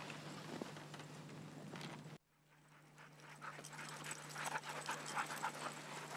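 A sled dog team passing close by: dogs panting as they trot, with many quick footfalls on packed snow, building up as the team draws near. The sound cuts out abruptly about two seconds in and comes back gradually.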